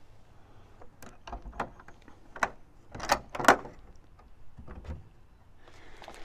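A hinged tongue-and-groove pine door on a home-built wooden smoker being unlatched and swung open, with a series of short latch clicks and wooden knocks. The loudest pair comes about three seconds in.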